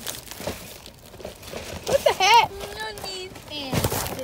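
Thin plastic bag crinkling as it is handled close to the microphone, with a voice calling out for about a second partway through.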